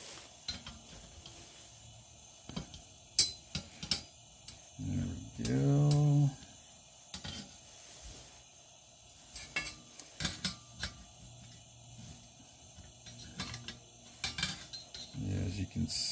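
Steel open-end wrench clinking and tapping against the metal nut and burner parts of a Coleman 220E lantern while the main nut is being worked loose, with scattered small metallic clicks. About five seconds in comes a brief hummed vocal sound.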